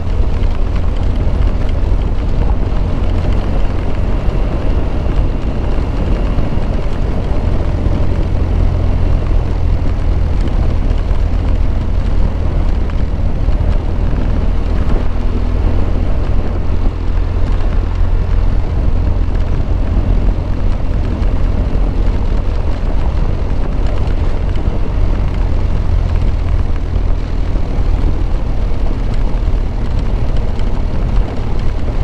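BMW R1200GS boxer-twin engine running steadily while riding over a gravel road, with a heavy low rumble that never lets up.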